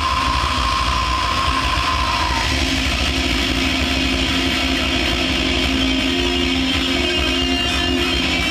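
A live death/thrash metal band playing loud: heavily distorted electric guitars over drums in a dense, unbroken wall of sound. A high held guitar note drops out about two and a half seconds in, and a lower sustained note carries on.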